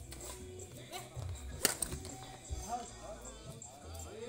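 Background music and voices, with one sharp crack about a second and a half in: a badminton racket striking the shuttlecock.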